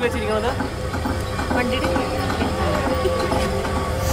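Small tourist train's engine running steadily as the train rolls along, a constant low rumble with a steady hum.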